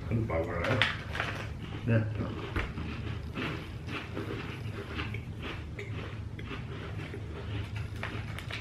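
People chewing crisp chocolate sandwich cookies in small, irregular crunches, with a brief murmured voice in the first couple of seconds and a low steady hum beneath.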